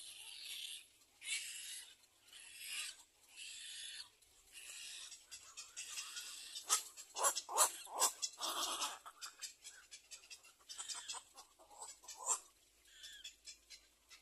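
Cormorants calling at the nest: a series of raspy, hissing calls about once a second, growing busier in the middle with sharp clicking notes, then thinning out near the end.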